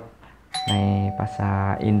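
A bright bell-like chime strikes about half a second in, its high ringing tones fading quickly, while a single steady tone is held on under the voice.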